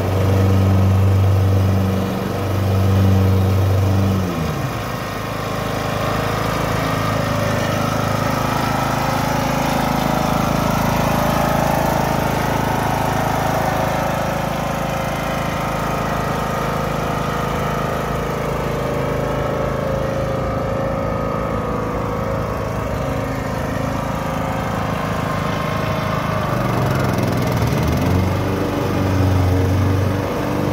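Ride-on lawn tractor running while mowing grass. A loud deep hum for the first few seconds, then fainter and higher as it moves off, then deep and loud again near the end as it comes back close.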